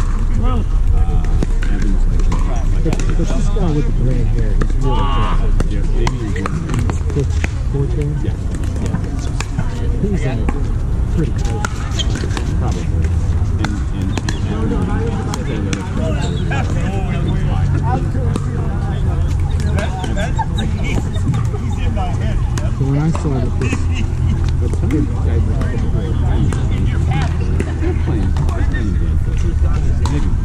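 Pickleball paddles popping against the ball in rallies, scattered sharp clicks throughout, under indistinct chatter of players and a steady low rumble of wind on the microphone.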